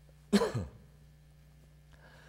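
A man coughs once, briefly, about a third of a second in, over a steady low electrical hum.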